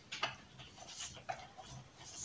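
Faint rustling with a few light clicks as strands of raffia are wound around the trunk of a young pine.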